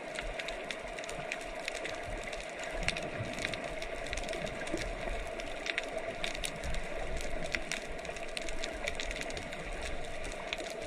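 Underwater ambience picked up by a camera in its housing: a steady hiss and hum with irregular sharp clicks and crackles.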